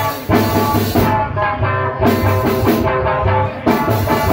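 Live band music from an electric guitar and a drum kit: sustained, ringing guitar notes over a steady beat of drum hits.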